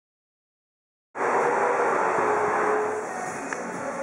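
Dead silence for about the first second, then a steady, dense background noise of a busy indoor restaurant room cuts in abruptly and holds.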